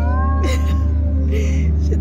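A child's drawn-out, whiny, meow-like vocal sound that rises in pitch and then falls away, a sound of reluctance over the food. A steady low background hum of music runs underneath.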